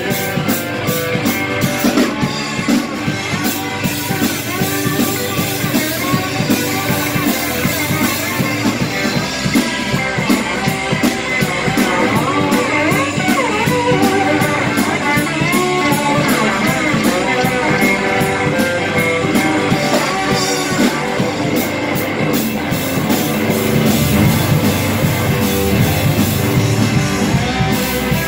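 Live rock-and-roll band playing an instrumental break: electric guitar lead with bending notes over electric bass, drum kit and acoustic guitar, with steady cymbal strokes.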